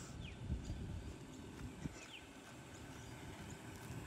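Faint outdoor ambience with a low rumble, a few soft low thumps about half a second in, and a few brief, faint high chirps from birds.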